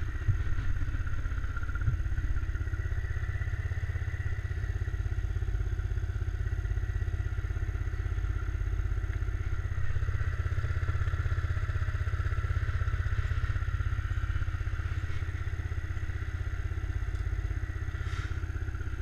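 ATV engine idling steadily, a low rumble with a faint whine above it, swelling slightly a couple of times.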